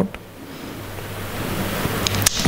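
Steady background hiss with a faint low hum, gradually growing louder.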